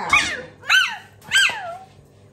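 A young child's high-pitched voice making three squealing, meow-like calls about two-thirds of a second apart, each rising and then falling in pitch.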